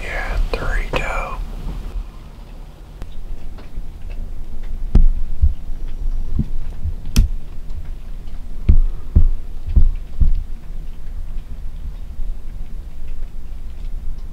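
A person whispering briefly, then a series of dull, low thumps and one sharp click over a low steady rumble.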